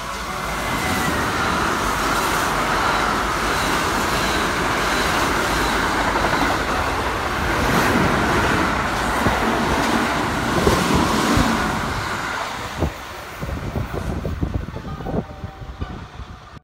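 Kintetsu electric train running through a station, a loud steady rumble of wheels and rails that eases off after about twelve seconds into a run of sharp clacks as the wheels cross rail joints.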